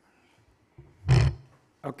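A short, loud burst of noise close into a desk conference microphone about a second in, lasting about half a second. A man's voice says "Okay" near the end.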